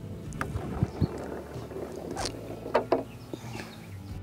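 A mini-golf putt: the putter taps the ball and it rolls down the lane. There are a few light knocks over a low steady background, the sharpest about two seconds in.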